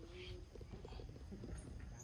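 Faint macaque sounds: a soft short call near the start, then a quick run of small clicks, over a low background rumble.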